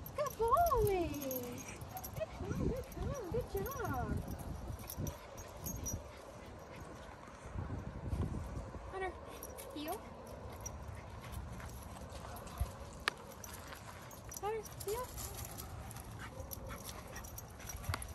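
Young terrier puppy whining in short cries that fall in pitch, the loudest about half a second in, with more scattered through.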